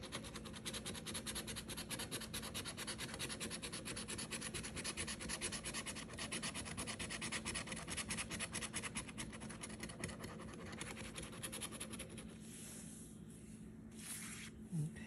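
A coin scratching the latex coating off a scratch-off lottery ticket in quick, repeated strokes, easing into a lighter rubbing near the end.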